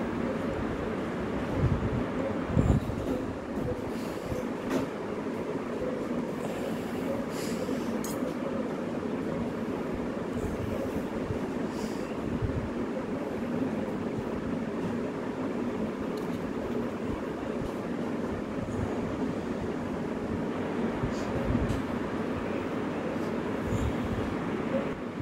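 A steady mechanical drone with a faint constant hum in it, unchanging throughout, with a few faint light clicks.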